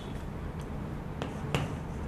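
Chalk tapping and scraping on a chalkboard as a word is written: about three sharp clicks, spaced unevenly, over a steady low room hum.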